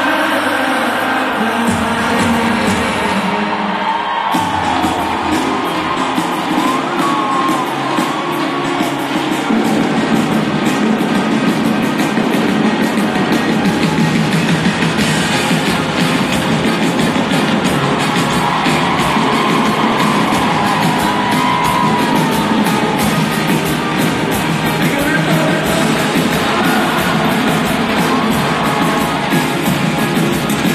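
Live pop band music filling a large arena, picked up from among the audience, with singing over it and crowd noise mixed in.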